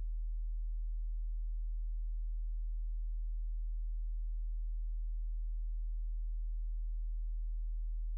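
A steady, very low-pitched hum: one pure, unchanging tone with nothing over it.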